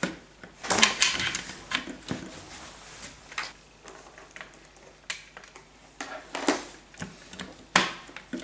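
Small plastic toy pieces clicking and knocking as the Pop-Up Olaf barrel game and its plastic sticks are handled, with scattered single clicks a second or so apart.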